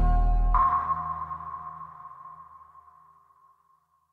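The end of the background song: the bass and chord stop about half a second in, leaving one high ringing note that fades away over about three seconds.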